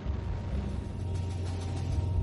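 Steady low rumble of a fighter jet in flight, with background music underneath.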